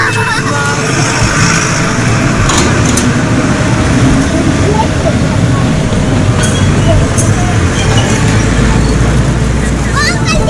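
Outdoor street ambience: steady traffic noise mixed with indistinct voices, with a deeper vehicle rumble swelling near the end.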